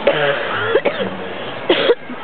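Short coughs or throat-clearing from a person, the loudest near the end, among faint voices.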